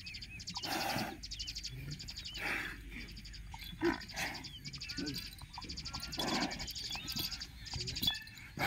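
A young water buffalo grinding its head and horns into dry soil, with a few short, harsh bursts about a second or two apart. Birds chatter in rapid trills and chirps throughout.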